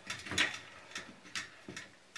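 A few irregular light clicks and taps as hands handle the wires against the sheet-metal channel of a fluorescent light fixture, by the lamp holders. The loudest click comes about half a second in.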